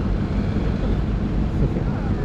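Steady low rumble of city street traffic, with wind buffeting the microphone and faint voices.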